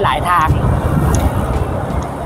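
Steady low rumble of a car's engine and tyres heard from inside the cabin while driving, with a man's voice over it at the start.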